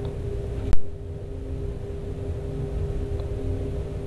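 Steady low machinery hum with a held tone, and a single sharp metallic click about three quarters of a second in, as a hex key is turned in the pilot valve's nut on the purifier bowl.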